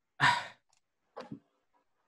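A man's short sigh, a single breathy exhale that fades quickly, followed about a second later by two faint small mouth or breath sounds.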